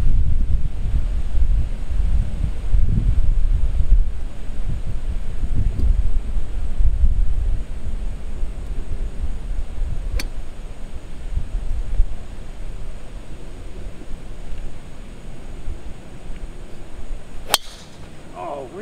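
Wind rumbling on the microphone, strongest in the first half. Near the end, one sharp crack as a driver strikes a golf ball off the tee.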